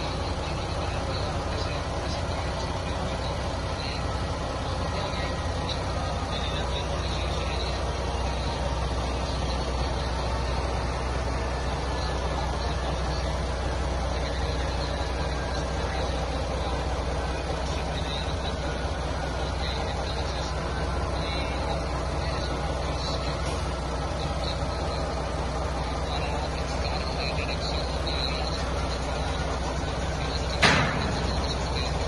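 Truck engine idling steadily, a constant low rumble, with indistinct voices over it.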